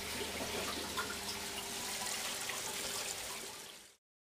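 Water trickling and splashing into an aquaponics fish tank, a steady flow with small drips, fading out just before the end.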